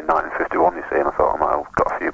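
Speech from a radio phone-in: talk between the presenter and a caller.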